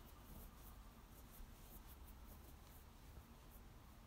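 Near silence, with faint rustling and small clicks of hands handling cables and plastic connectors.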